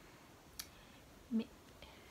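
A single sharp click about half a second in, then a short spoken word, over quiet room tone.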